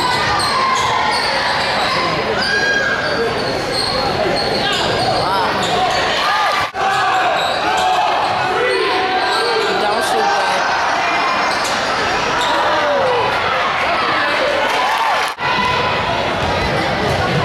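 Live gym sound of a basketball game: echoing crowd chatter and shouts over a basketball being dribbled on the hardwood court. The sound drops out briefly twice, about seven and fifteen seconds in.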